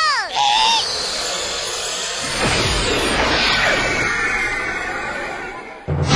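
Cartoon sound effects: a couple of short chirping squeaks, then a long rushing whoosh of an animated craft taking off, fading near the end.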